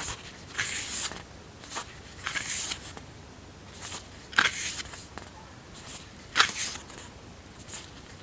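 Pages of a glossy paper booklet being turned by hand: a string of short, crisp papery swishes and flaps, about ten in all at uneven intervals, the loudest about four and a half and six and a half seconds in.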